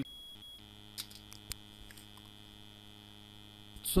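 A steady electrical hum with many overtones starts about half a second in and cuts off just before speech resumes, with a couple of faint clicks.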